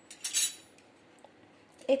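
A short metallic scrape and clink of a spoon against a small steel bowl, once, about a third of a second in.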